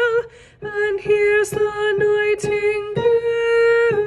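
A woman singing a choral melody line alone, note by note, with a short breath about half a second in and a long held note near the end.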